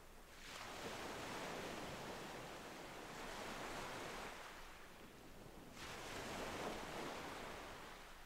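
Soft ocean waves washing in, two swells: the first rises about half a second in and ebbs away, and the second comes in near six seconds and fades.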